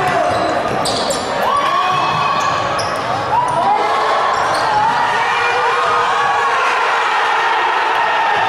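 Futsal match play in an echoing sports hall: players' shoes squeaking repeatedly on the hardwood court, with sharp knocks of the ball being struck and players' voices.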